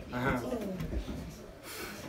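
Quiet, indistinct male voices: a short murmured utterance about half a second long, then low mumbling, softer than the surrounding conversation.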